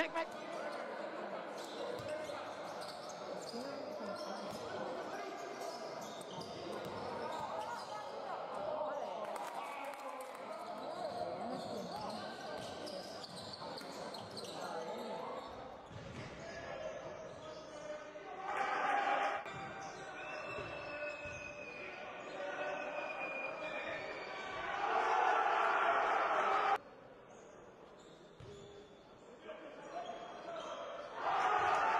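Live game sound in a gym: a basketball bouncing on the court amid indistinct voices, with two louder bursts of voices about 19 s and 25 s in. The sound drops away abruptly near 27 s.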